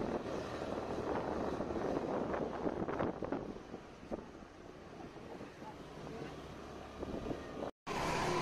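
Motorbike running along a street with wind buffeting the microphone, louder for the first few seconds and then quieter. The sound drops out for a moment near the end.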